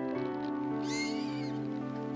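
Soft film-score music with held notes, and about a second in a short, high squeal from a young animal.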